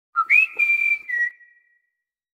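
A short whistled jingle of three notes: a low one, a higher one that scoops up and is held, then a slightly lower closing note, fading out about a second and a half in. It is the brand's audio logo sounding with the logo's appearance.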